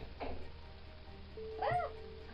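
A short animal call that rises and falls in pitch, loudest near the end, over steady background music.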